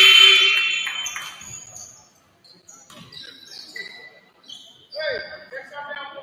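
Gym scoreboard buzzer sounding once at the start, a loud tone of under a second that rings on in the large hall. Voices of players and spectators follow.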